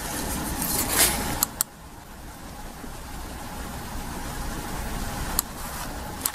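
Steady low background rumble, with a few sharp clicks: two close together about a second and a half in, and one more near the end.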